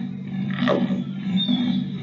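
Leopard sounds played from a recording: a low steady rumble underneath, with one falling call a little over half a second in.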